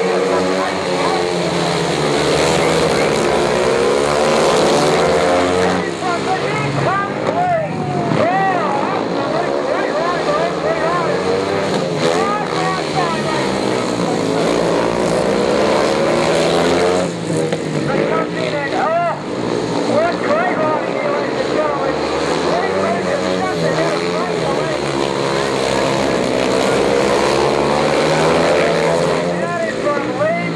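Three speedway motorcycles racing, their engines running together and rising and falling in pitch as the riders accelerate and back off through the turns.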